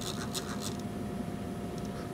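A few faint scratchy ticks in the first second as the rotary navigation knob on a network analyzer's front panel is turned by hand, over a steady faint hum.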